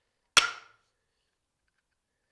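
A single sharp knock on a steel anvil, about a third of a second in, with a brief metallic ring that dies away quickly.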